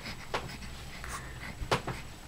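An infant's short, puffing breaths, like excited panting: one puff early, then a louder quick pair near the end.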